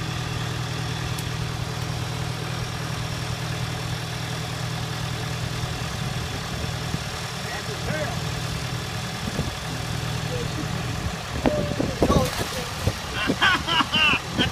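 A tracked excavator's diesel engine idling with a steady low hum. In the last couple of seconds it is joined by a burst of sharp noise and raised voices.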